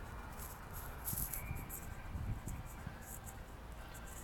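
Faint outdoor background noise: a steady low rumble with a few soft knocks about one to two and a half seconds in.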